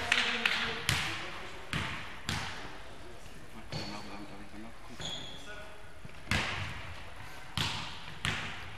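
A basketball bouncing on a sports hall's wooden floor: single bounces about a second or more apart, each one echoing in the hall, with a couple of short high squeaks in the middle.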